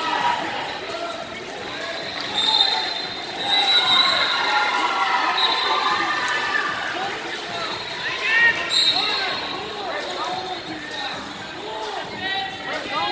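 Many overlapping voices of spectators and coaches talking and calling out in a large, echoing hall, with short high-pitched squeaks a few times.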